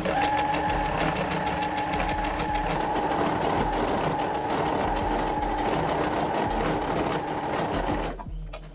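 Home electric sewing machine stitching fabric in one continuous run at a steady speed: a fast, even patter of needle strokes over a steady motor hum.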